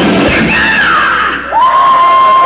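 Heavy metal band playing live as a song ends. The full band thins into a falling wail. Then, about one and a half seconds in, a long high note slides up and holds steady.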